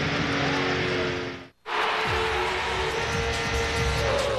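IROC race car engine running steadily at speed, heard through the in-car camera. About a second and a half in, the sound cuts out briefly. After that, race cars on the track are heard with music underneath.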